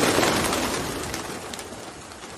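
Dove sound effect: a dense, noisy rush that is loudest at the start and fades steadily.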